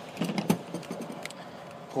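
A few short clicks and knocks of hand tools and parts being handled under a truck's hood, the sharpest about half a second in, then a couple of faint ticks.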